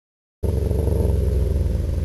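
A loud, low, engine-like rumble, probably an outro sound effect, that starts abruptly about half a second in and cuts off suddenly.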